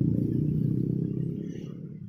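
Low background rumble, fading out steadily toward the end.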